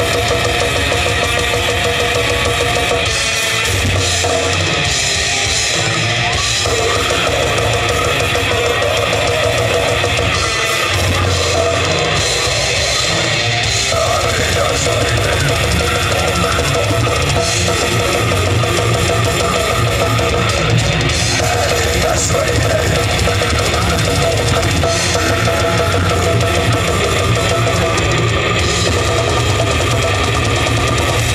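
A live brutal death metal band playing at full volume: heavily distorted electric guitars, bass and fast, dense drum-kit playing, with growled vocals over the top. The sound is continuous and unbroken.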